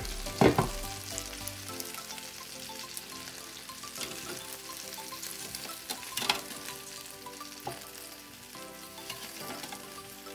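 Chicken wings sizzling in a hot air-fryer basket at the halfway point of cooking, with a few sharp clicks of metal tongs against the wings and basket as they are turned over; the loudest click comes about half a second in.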